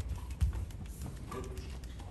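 A few light knocks with one louder thump about half a second in, sounds of movement on a stage.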